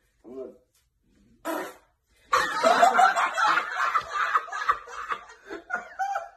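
A man laughing hard: after two brief faint sounds, loud laughter breaks out about two seconds in and keeps going in quick repeated bursts.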